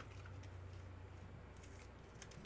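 Near silence with a steady low hum. A few faint clicks near the end come from a trading card being handled in a clear hard plastic holder.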